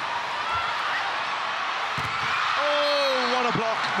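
Indoor arena crowd noise during a volleyball rally, with a few sharp smacks of the ball being hit. Near the end a drawn-out vocal "oh" rises over the crowd as the attack is blocked.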